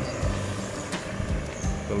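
A motor vehicle engine running steadily, a low continuous hum with street noise around it.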